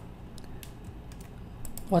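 Typing on a computer keyboard: a short, uneven run of key clicks.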